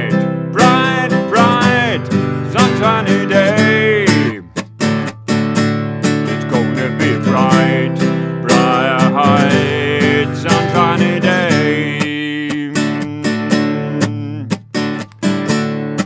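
Acoustic guitar strummed in a steady rhythm while a man sings the melody over it.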